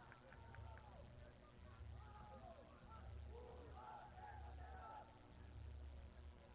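Faint, distant chatter of several voices over a low, pulsing hum.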